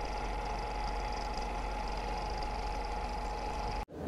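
Steady hiss and low hum with a faint constant tone, the noise of an old film soundtrack under the opening titles. It cuts off suddenly just before the end.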